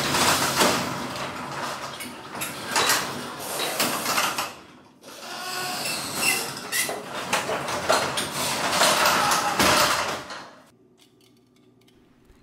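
Steel sectional garage door pushed up by hand along its tracks with the opener disengaged, its rollers and panels rumbling and rattling as it moves. The noise dips briefly about five seconds in, runs on again, and stops about ten and a half seconds in.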